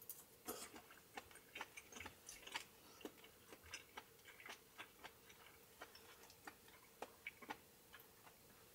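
Soft, irregular clicks and taps of chopsticks against a small bowl, about two a second, with quiet sounds of eating.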